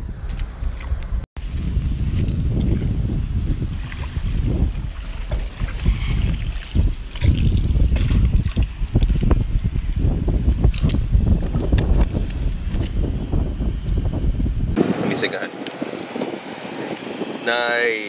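Wind buffeting the microphone, a rough, steady rumble that drops away about fifteen seconds in.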